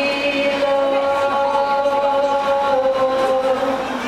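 Singing: long held notes, sung without a break, the pitch sinking slowly across the few seconds.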